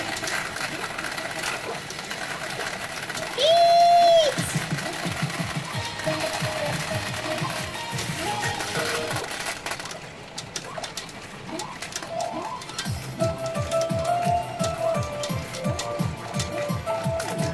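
P Fever Powerful 2024 pachinko machine playing its electronic music and sound effects over a rapid clatter of clicks, from the balls. About three and a half seconds in, a loud short electronic tone rises, holds and falls away.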